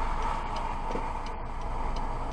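A car's indicator flasher ticking evenly inside the cabin, about three clicks a second, over the steady low hum of the stopped car's engine.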